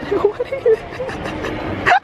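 A goat bleating in short calls while being petted, with laughter.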